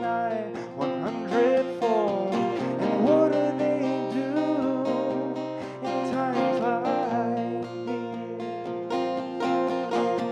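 Solo male voice singing a song, accompanied by a strummed acoustic guitar.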